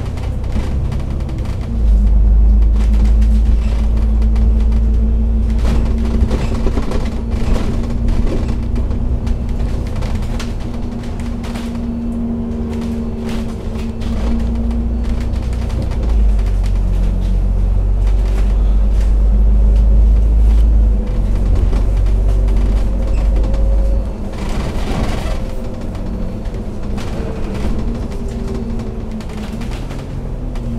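Double-decker bus heard from on board while driving: a loud, continuous low rumble of the engine with a steady drivetrain whine. The pitch of the whine shifts about halfway through, and the deepest rumble eases off about three-quarters of the way through.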